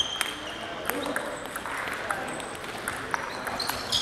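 Table tennis balls clicking off bats and table in quick, irregular taps, with background voices.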